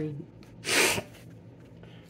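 The tail of a spoken word, then about half a second in one short, sharp breath through the nose.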